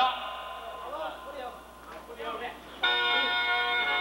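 A man's voice at first, then about three seconds in a khaen, the Lao bamboo free-reed mouth organ, starts up loudly with a sustained chord of several steady notes held at once.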